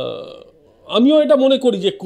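A man speaking Bengali: a short drawn-out vocal sound at the start, a brief pause, then continuous talk from about a second in.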